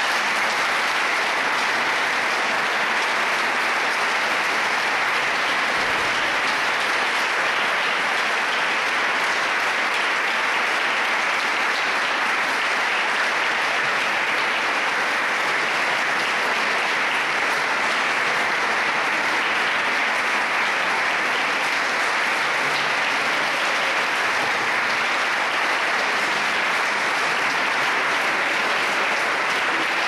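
Audience applauding, steady and unbroken.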